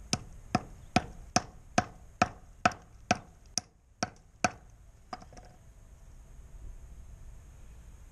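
Hammer blows on a corroded iron beach find resting on a wooden stump, knocking the rust crust off it: about a dozen sharp strikes, a little over two a second, that stop about four and a half seconds in, followed by a couple of faint taps.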